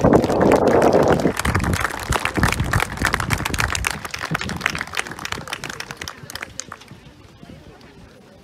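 A concert band's last chord dies away in the first second, under audience clapping. The applause then thins and fades out over the last few seconds.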